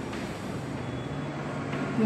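Chalk scratching on a chalkboard as a word is written, over a faint steady low hum.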